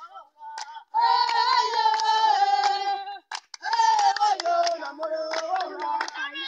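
Young voices singing a team warm-up chant together in two long sung phrases, over steady rhythmic hand clapping.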